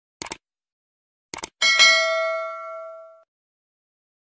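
Subscribe-button animation sound effect: a short click, a second click about a second later, then a bell ding that rings out and fades over about a second and a half.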